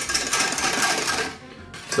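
Wire balloon whisk beating fast in a stainless steel saucepan of cold plant milk, sugar and cornstarch, its wires rattling against the pan's sides and base in a quick run of ticks. The beating drops away about a second and a half in.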